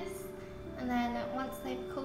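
A woman's voice over background music with long held notes.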